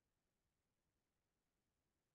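Near silence: nothing but a faint, even noise floor.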